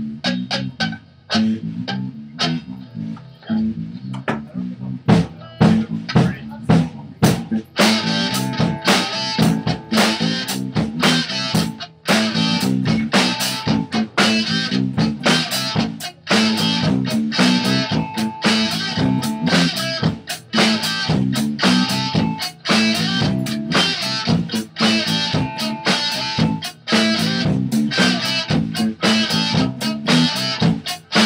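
Instrumental band demo with guitar, bass guitar and drum kit playing together; a sparser opening with guitar and bass over drum hits fills out into a fuller, denser full-band section about eight seconds in.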